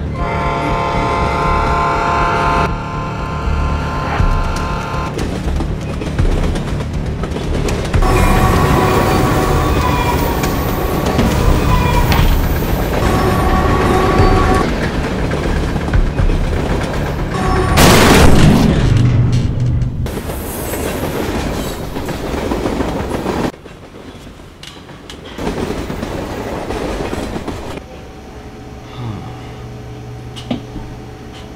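Freight train running, with a locomotive horn chord held for about the first three seconds, then a rolling rumble with further horn notes. A loud rush of passing train comes about eighteen seconds in, and the sound drops away after about twenty-three seconds.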